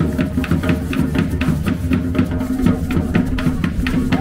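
A street percussion group playing hand drums in a fast, even rhythm, sharp strokes over low drum tones.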